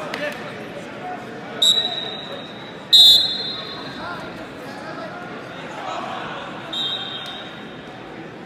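Wrestling referee's whistle, several short shrill blasts over gym chatter. The loudest, about three seconds in, comes as the wrestlers lock up again, signalling the restart of the match; fainter blasts come just before it and near the end.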